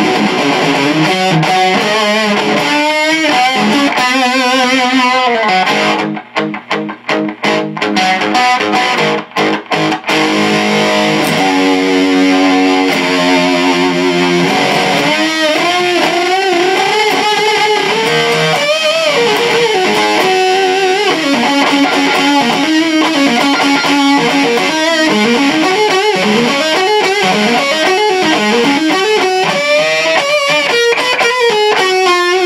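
Electric guitar, a Melody Maker with a single P90 pickup, played through a DAM Meathead fuzz clone into a small solid-state Vox Pathfinder amp, with a thick fuzz-distorted tone. Short chopped chord stabs with gaps come around a quarter of the way in, then held chords, then single-note lead lines with string bends.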